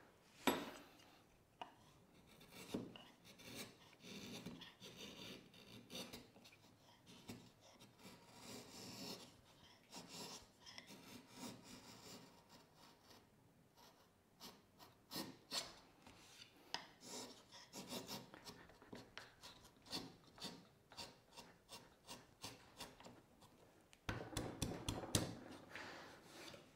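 Ashley Iles bevel-edged chisel, pushed by hand, paring thin shavings off the edge of a sapele board in a series of short, faint scraping strokes, coming quicker and closer together in the second half. The chisel is cutting on its factory edge, not yet honed.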